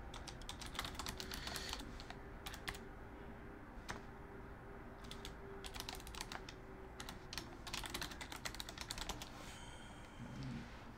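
Typing on a computer keyboard, keystrokes coming in several quick bursts separated by short pauses.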